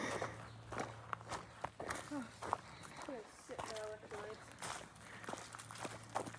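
Footsteps crunching through dry fallen leaves on a forest trail, with a faint voice in the background in the middle.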